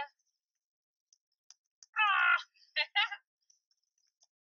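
A crow cawing: one longer caw about two seconds in, followed quickly by two short caws.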